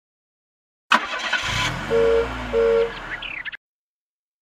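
Cartoon car sound effect: an engine starting up and revving, with two short horn toots in the middle. It begins suddenly about a second in and cuts off abruptly near the end.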